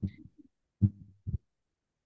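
Four short, muffled voice sounds, brief low syllables through a video-call connection, about half a second apart.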